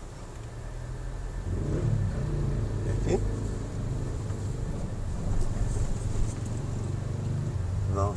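Low engine and road rumble of cars in slow stop-and-go city traffic, growing louder about a second and a half in as the traffic moves off, with a brief rising whine near the middle.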